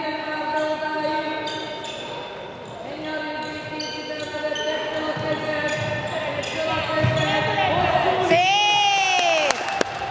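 Handball play in a large hall: the ball bouncing on the wooden floor under sustained overlapping shouts and calls. Near the end, one loud call rises and falls as a goal goes in.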